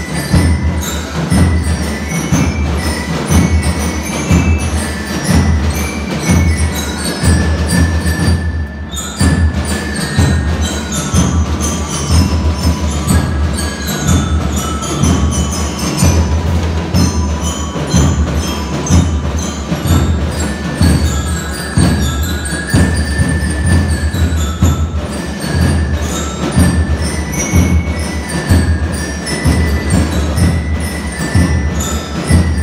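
Drum and lyre band playing a national anthem: bell lyres carry the melody over a steady drum beat.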